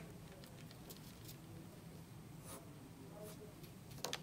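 Near silence: faint low background noise with a few soft clicks scattered through it.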